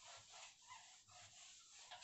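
Faint, quick back-and-forth rubbing of a duster wiping writing off a whiteboard, a few strokes a second, with a slight squeak here and there.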